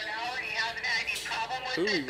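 A voice making an announcement over a loudspeaker, sounding tinny like a police dispatch, with music playing underneath.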